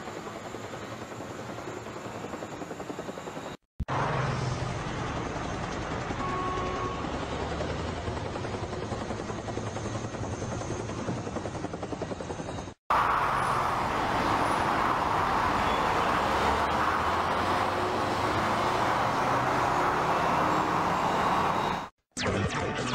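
Steady rushing background noise with no clear tone, in three stretches cut by two brief dropouts, about four and thirteen seconds in; the last stretch is louder.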